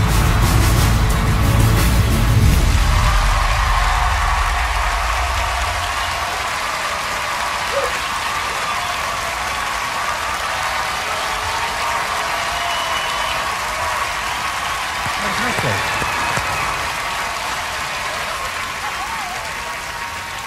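Performance music with a strong bass cuts off about three seconds in, giving way to a large theatre audience cheering and applauding.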